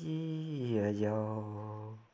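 A man singing a Dao pa dung folk song alone, in a chanting style, drawing out a long note that drops to a lower held pitch about a second in, then cut off abruptly at the end.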